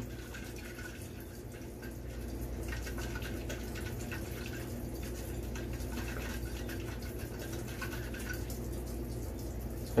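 Small amounts of water being mixed into neem oil and surfactant in a small cup, a steady fine patter and slosh of liquid as the emulsion forms. It grows a little louder about two seconds in.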